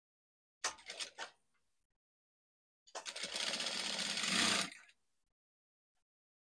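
Industrial lockstitch sewing machine: a brief stutter of a few stitches about a second in, then a run of about two seconds of steady stitching that stops abruptly.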